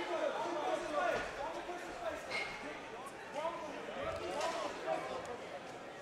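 Several voices calling out faintly in the background at an MMA cage, with a couple of faint knocks.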